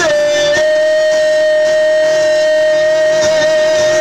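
Live acoustic music: a single long high note held steady in pitch, with the guitar faint beneath it.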